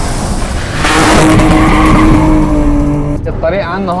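A car's engine held at high revs while its tyres skid and screech on asphalt, one steady engine note sagging slightly before cutting off about three seconds in.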